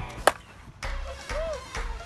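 A softball bat striking a pitched softball once: one sharp crack about a quarter second in, over background music that drops out briefly after the hit and then comes back.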